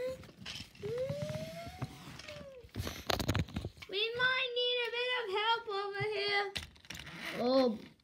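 A child's voice making wordless vocal sound effects for the toy trains: rising and falling glides, then a wavering held tone, with a short clatter about three seconds in.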